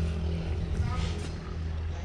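Steady low drone of a running engine, with faint voices briefly heard about a second in.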